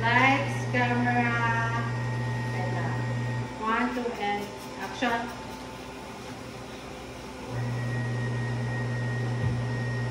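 A machine's steady low hum with a faint high whine, which cuts out about three and a half seconds in and starts again about four seconds later, with voices talking over the first half.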